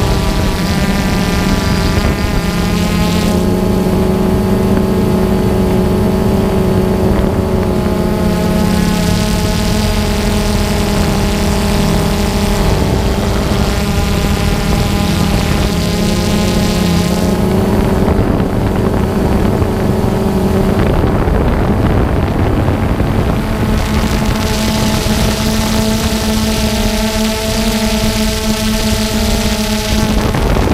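Quadcopter drone's electric motors and propellers whining steadily, several close tones shifting in pitch every few seconds as the drone's throttle changes.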